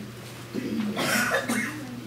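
A person coughing and clearing their throat about a second in, in a small room.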